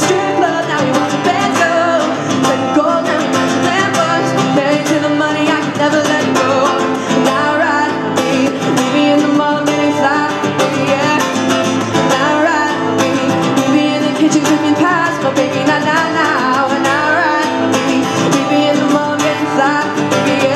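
A woman singing solo to her own acoustic guitar accompaniment, the guitar strummed steadily under a voice that slides and bends through the melody.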